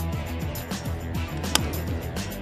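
Background music with a steady beat; about one and a half seconds in, a single sharp crack of a baseball bat hitting the pitch.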